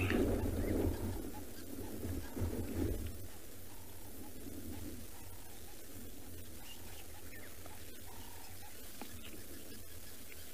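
Quiet outdoor ambience: a low rumble that eases off after about three seconds, with a few faint, short bird calls in the background.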